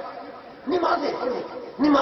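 Speech only: a man talking into a microphone, with a short pause near the start before he carries on.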